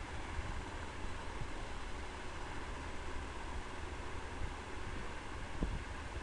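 Steady background noise from a desk microphone: a low rumble with a hiss above it, and a faint knock near the end.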